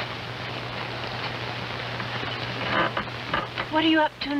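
Steady water-like hiss over a low steady hum. Near the end come a few short knocks and a brief vocal sound.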